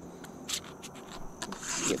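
Close handling noise of fishing tackle: light rubbing with a few scattered small clicks as hands take hold of a hollow-body frog lure and baitcasting reel. A faint steady high insect buzz sounds throughout.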